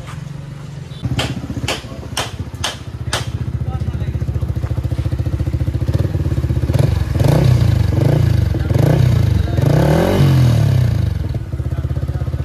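Yamaha R15 V4's single-cylinder engine idling, then revved up and down about five times in quick succession in the second half. A run of five sharp clicks sounds over the idle about a second in.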